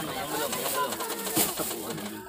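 Several children's voices chattering over one another close around a car, with a plastic bag crinkling as it is handed over.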